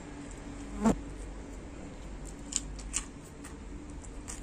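Eating sounds of a man chewing food taken by hand, with a sharp mouth smack about a second in and two smaller smacks near the three-second mark. A steady low buzz runs underneath.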